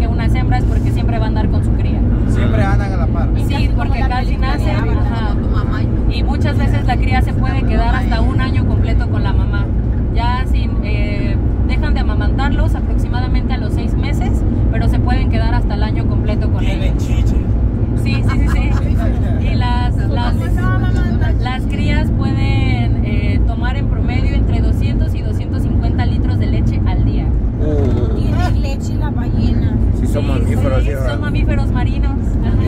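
A woman talking over steady low road and engine noise inside a vehicle's cabin.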